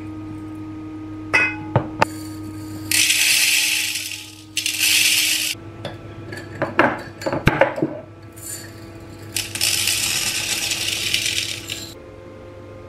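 Dry pearl barley and mung beans poured from glass jars into a nonstick rice-cooker inner pot, heard as two long hissing patters of grains, the first a few seconds in and the second near the end. In between, the jars' wire clasps click and the glass clinks.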